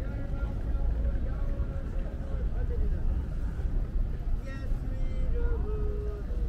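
Busy city street ambience at a pedestrian crossing: a crowd's mixed chatter over a steady low traffic rumble, with a held tone that steps down in pitch twice.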